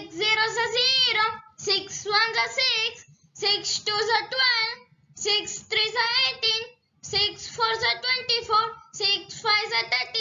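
A child's voice chanting the six times table in a sing-song recitation, six lines from "six zeros are zero" to "six fives are thirty", each line followed by a short pause.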